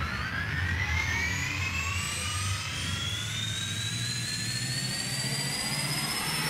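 A slow rising whoosh in a speed garage track: several pitched lines climb together through the whole stretch, like a jet engine spooling up, over a low pulsing bass.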